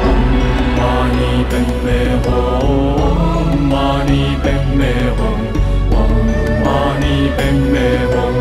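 Chanted Buddhist mantra set to music, with voices singing over a steady low drone.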